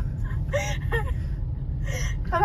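Steady low rumble of a car's engine and tyres heard inside the cabin in slow traffic, with a couple of short vocal sounds and a breath over it.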